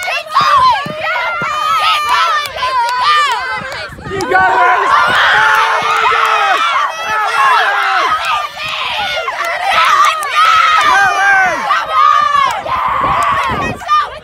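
Several teenage girls shouting and cheering encouragement at once, their voices overlapping, louder after about four seconds.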